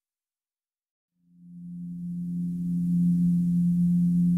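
Silence, then about a second in a low, steady sustained tone of slow relaxing ambient music fades in gently and holds.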